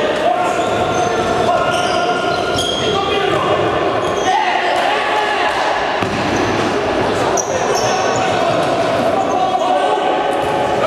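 Futsal being played in a reverberant sports hall: players' voices shouting and calling, the ball thudding off feet and the hard floor, and short high squeaks.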